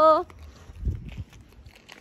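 A voice ends on a long held vowel, then faint footsteps of someone walking, with a brief low rumble about a second in.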